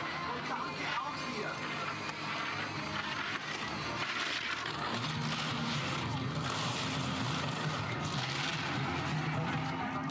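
Giant slalom skis carving and scraping on hard, icy snow, a steady hiss as the racer turns through the gates, with crowd noise and a low steady drone behind from about halfway.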